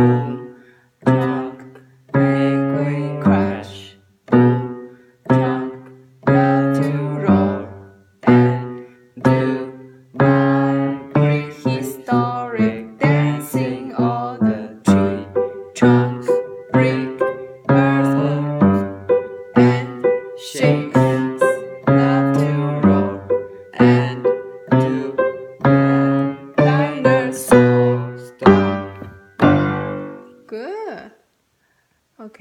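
Piano playing a slow, heavy piece: loud low chords struck about once a second, each ringing and fading, with quicker notes over them from about a third of the way in.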